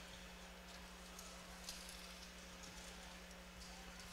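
Near silence: a faint steady low hum under a soft hiss, with a few very faint ticks.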